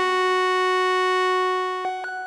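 EML 101 analog synthesizer holding a single steady note rich in overtones. The note fades away near the end, where there is a faint click.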